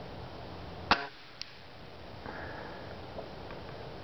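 A Ruger Airhawk break-barrel spring-piston .177 air rifle fires a single shot about a second in, a sharp crack. A faint click follows about half a second later.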